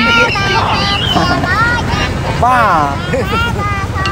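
Two men talking, over a steady low hum of an idling motorcycle engine.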